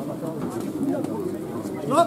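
Indistinct talking from a group of men huddled together, with one voice rising sharply into a loud call right at the end.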